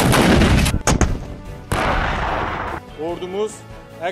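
Towed artillery guns firing: a loud blast at the start, sharp cracks about a second in, and another long blast just under two seconds in.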